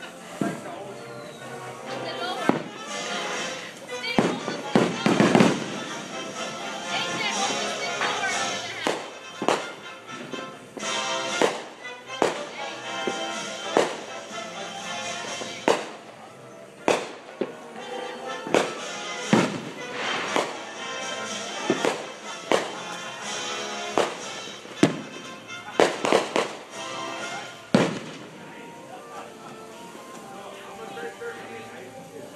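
Fireworks and firecrackers going off again and again, with about twenty sharp bangs and pops at uneven gaps, over background music and voices.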